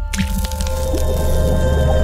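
Logo sting: a sudden splat sound effect for an animated ink drop splashing, over a held music chord with a deep bass.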